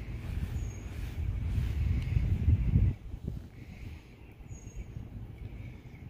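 A dry microfibre towel rubbed hard across a truck's coated paint, a low scrubbing noise that stops abruptly about halfway through; quieter background follows.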